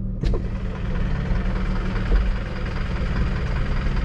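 Car engine idling steadily, heard from inside the cabin, with a brief click just after the start.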